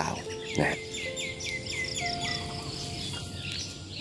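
Soft background music with long held notes. About a second in, a bird gives a quick run of about eight descending chirps.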